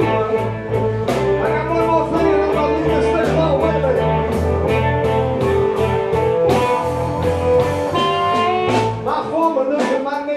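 Live blues band playing a 12-bar blues in A minor: electric guitars over drums, with a steady beat.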